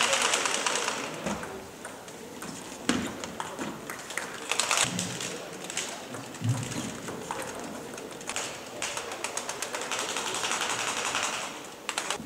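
Table tennis doubles rally: a ping-pong ball clicking off bats and the table in quick exchanges, with a few short rushing bursts of noise between the strokes.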